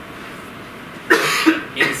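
A man coughing twice in quick succession about a second in, after a moment of quiet room tone.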